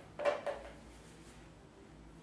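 A brief clatter of a paintbrush knocked against a brush holder about a quarter of a second in, then quiet room tone.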